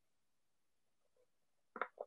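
Near silence, broken by two very brief faint sounds near the end.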